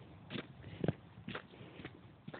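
Footsteps of a person walking on a dirt track, about two steps a second.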